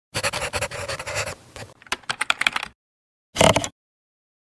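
Pencil scratching on paper as a logo is sketched: a continuous scratchy scribble for about two and a half seconds, breaking into a quick run of short strokes near its end, then one more brief stroke about a second later.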